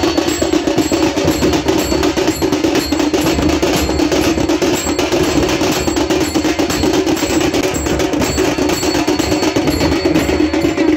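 Percussion music: drums playing a dense, rapid beat at an even loudness.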